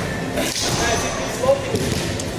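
Talk in a gym, with one short thud about one and a half seconds in.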